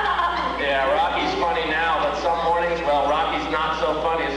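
People talking, the words not clear enough to make out, over a steady low hum.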